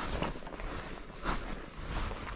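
A few footsteps on frost-covered, stony ground, over a low rumble of wind on the microphone.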